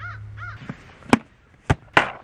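A bird calls twice in quick succession. Then comes a series of sharp plastic knocks and clatters as laundry baskets are handled and stacked, the loudest about a second in and near the end.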